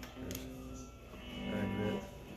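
Electric guitar strings, a 1965 Gibson Firebird VII's, ringing faintly on low open-string notes as the guitar is lifted and turned, with a light knock from handling.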